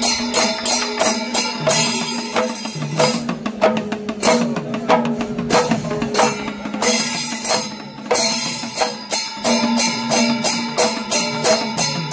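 Panchavadyam temple percussion ensemble: timila hourglass drums and a maddalam beaten in a fast, driving rhythm, with ilathalam brass cymbals ringing along. The strokes thin out around the middle and pick up densely again in the second half.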